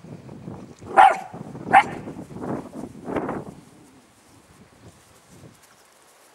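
A Belgian Tervuren shepherd puppy barking: two short, sharp barks about one and two seconds in, then two longer, softer ones.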